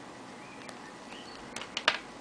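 A few sharp clicks near the end, with a smaller one earlier, from a smartphone being handled over faint room hiss.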